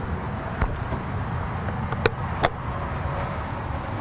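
Steady low outdoor rumble, like distant road traffic, with three sharp clicks: one about half a second in and two close together about two seconds in.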